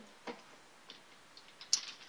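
A few scattered light clicks and knocks of small glass nail polish bottles being handled and picked up, the sharpest click near the end.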